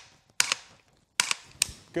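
Sharp metallic trigger clicks from an AR pistol being dry-fired with a Mantis Blackbeard, the drop-in unit that resets the trigger after every press. There is a close pair about half a second in, then three more in quick succession over the second half.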